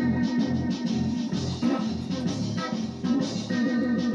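Electric guitar played in a live instrumental jam, over a steady repeating low bass pattern, with held higher notes ringing above.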